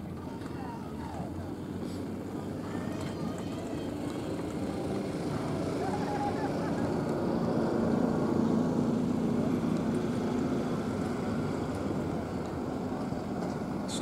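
A motor vehicle passing, its engine hum swelling to a peak about eight seconds in and then easing off.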